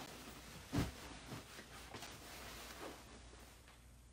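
Faint handling sounds of a fabric throw pillow on a couch: a soft thump about a second in, then a few light rustles.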